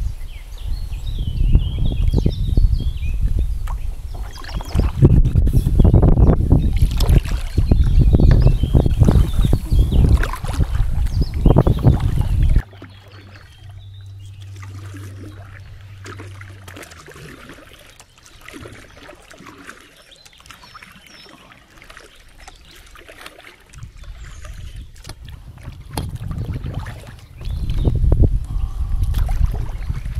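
Kayak being paddled on calm water: paddle strokes and water splashing against the hull, under a low rumble of wind on the microphone, in surges every second or two. About twelve seconds in the sound drops off suddenly to a quieter stretch with a faint low hum, and the strokes and rumble come back near the end.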